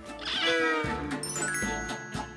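A cartoonish cat meow sound effect over light background music, followed by held bright chime-like notes near the end.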